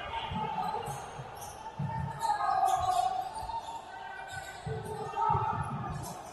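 A basketball bouncing on a hardwood court in a large echoing hall, a few irregular dribbles as it is brought up the floor.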